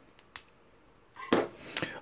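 Small clicks of hard plastic model-kit parts being handled: two light clicks in the first half, then a louder stretch of handling noise with a couple of sharper clicks in the second half.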